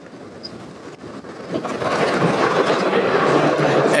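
Loud, steady rushing noise of a crowded exhibition hall, swelling up about a second and a half in.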